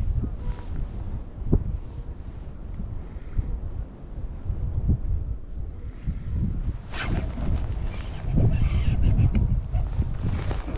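Wind buffeting the microphone, a steady low rumble, with a few louder, sharper sounds in the last three seconds.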